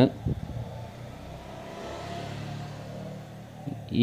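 Faint background sound of a road vehicle passing, swelling and then fading over about two seconds.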